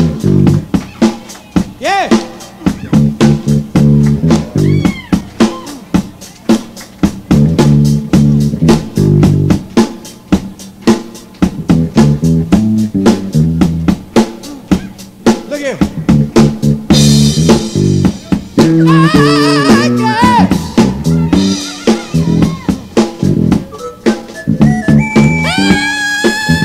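Live funk-disco band music: an electric bass plays a busy solo line over a steady drum beat. Higher bending melodic notes from guitar or keys join about two-thirds of the way through, and again near the end.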